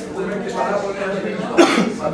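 A single loud cough about one and a half seconds in, over ongoing talk in the meeting room.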